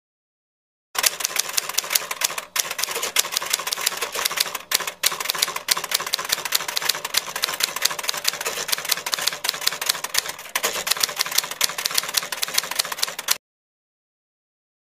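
Typing sound effect: a rapid run of sharp key clicks, several a second, starting about a second in and cutting off suddenly near the end. It accompanies an on-screen caption appearing letter by letter.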